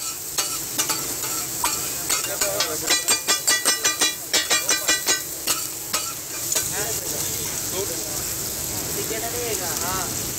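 Metal spatulas clattering rapidly against a flat iron tawa in quick bursts as onions and tomatoes are chopped and stirred, over the sizzle of frying. The clatter stops about six seconds in, leaving a steady sizzle.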